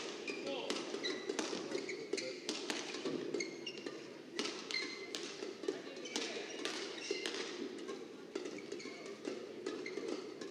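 Badminton rackets striking shuttlecocks in a warm-up rally, a string of sharp clicks about two a second, mixed with short squeaks of shoes on the court mat over a steady hall hum.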